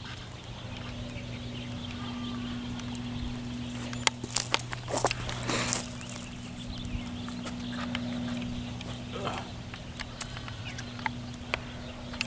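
Scattered clicks and short rustles of hands handling a small, freshly caught fish and the line while it is unhooked, with a longer rustle about five seconds in. A steady low hum runs underneath.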